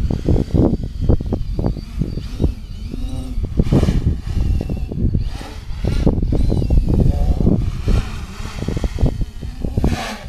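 Quadcopter's brushless motors and propellers whining, rising and falling in pitch as the throttle changes in flight, over heavy wind buffeting on the microphone.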